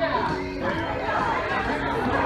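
Many people chattering at once over background music.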